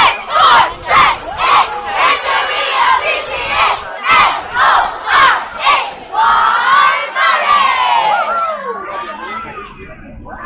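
A group of children chanting together in rhythm, about two shouts a second, then one long drawn-out shout near the end.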